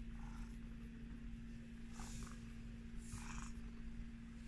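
Sphynx cat purring steadily as it rubs its head against a hand, with two brief soft rustles about two and three seconds in.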